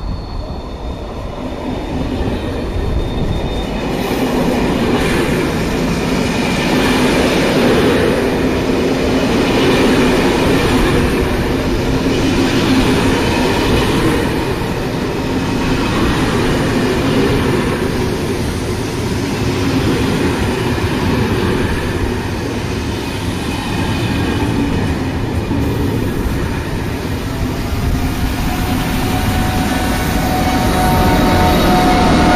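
An SNCF push-pull train of Corail passenger coaches rolls slowly past along the platform with a steady rumble of wheels on rail and a faint high squeal. Near the end a rising whine comes in as the BB 7200 electric locomotive pushing at the rear draws level.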